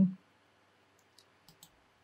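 Faint clicks of a computer mouse, about three of them between one and one and a half seconds in, with near silence around them.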